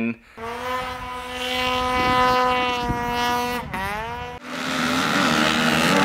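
Snow bike engines racing: a high-revving engine holding a steady pitch for about three seconds, sweeping up in pitch near the four-second mark, then giving way to a noisier rush.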